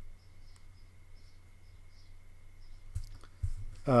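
Quiet pause: faint steady hum and hiss of a desk microphone, with faint ticks and two low thumps about three seconds in. A man's voice says "uh" at the very end.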